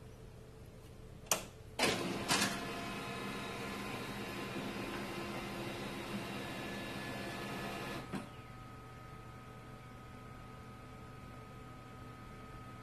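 HP LaserJet M2727nf laser multifunction printer starting up: a few sharp clicks about a second in, then its mechanism runs steadily for about six seconds. It stops with a click near the end, leaving a fainter steady hum with a thin whine.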